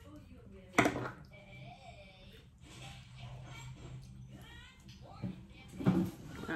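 Faint voices in a small room, with a sharp knock just under a second in and another near the end.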